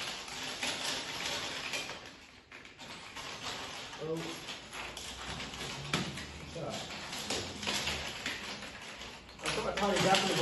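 Loose plastic Lego bricks clattering and clicking as several pairs of hands rummage through a pile of them on a table, a rapid, irregular patter of small taps.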